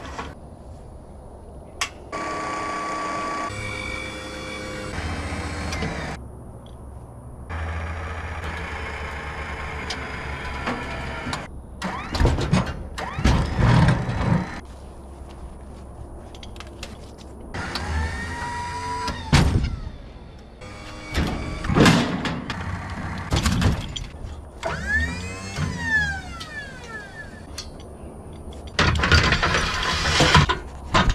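Truck-mounted hydraulic crane at work lifting lumber: a machine whine that rises and falls in pitch, broken by sharp clanks and knocks of wood and steel. The sound changes abruptly several times.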